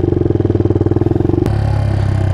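Suzuki DR200's air-cooled single-cylinder four-stroke engine running as the bike pulls away, with a fast pulsing beat. About a second and a half in there is a click and the engine note drops lower.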